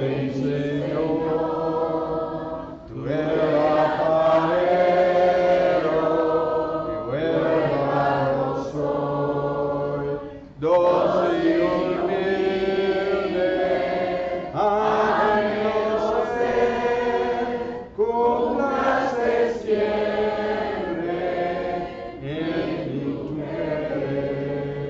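Church congregation singing an invitation hymn unaccompanied, in long held phrases with short breaks between the lines.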